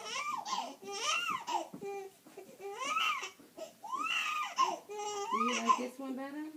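A two-month-old baby crying in about five separate wails, each rising and falling in pitch.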